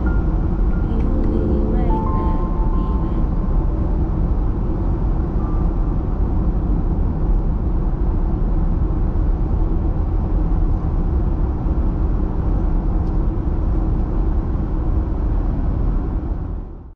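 Steady road and wind noise of a car driving at highway speed, heard from inside the cabin: a loud, unbroken low rumble with hiss over it.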